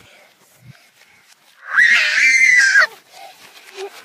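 A shrill scream played backwards, about a second long near the middle, its pitch rising and then falling.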